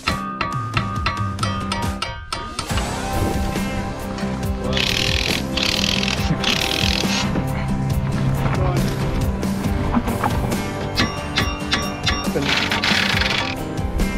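Background music over hand-tool work on a truck's front suspension: a run of quick ratchet-like clicks in the first couple of seconds, and two longer spells of harsher tool noise, one midway and one near the end.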